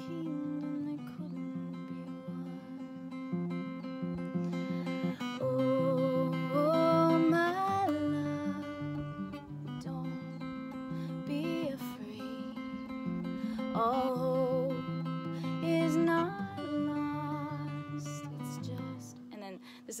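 Steel-string acoustic guitar fingerpicked with thumb and first finger in 6/8, cycling through the chords C, G, A minor and F, with a woman singing long held notes that waver with vibrato at times.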